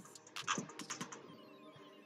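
Computer keyboard keys clicking in a quick run of keystrokes during the first second or so, then dying away.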